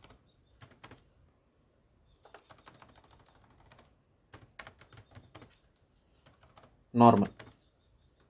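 Computer keyboard typing in several short bursts of keystrokes as code is edited.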